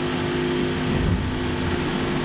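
Steady mechanical hum with two even tones over a constant rushing noise, heard inside a racing yacht's cabin.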